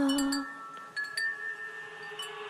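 Bell-like ringing tones: a held note fades out, then a few light chime-like strikes about a second in leave new tones ringing on.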